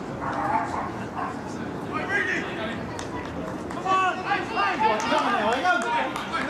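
Several voices of spectators and players talking and calling out at once, overlapping and too distant to make out, busier in the second half.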